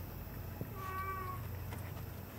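A domestic cat meows once: a single short call at a steady pitch, lasting under a second. A low steady hum runs underneath.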